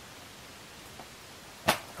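Faint steady room hiss, then a single short, sharp click near the end as the paperback book is handled and lowered.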